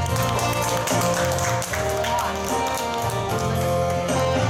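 Live street music: a wind instrument playing a melody over a backing track with a steady bass line. Listeners clap along to the beat.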